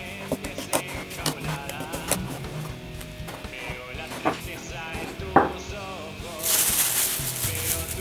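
Background guitar music over the clicking and scraping of hands mixing flour and sugar in a bowl, with one sharp knock about five seconds in. A plastic bag crinkles for about a second near the end.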